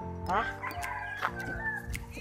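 Background music with held tones, and a short rising call over it about a third of a second in.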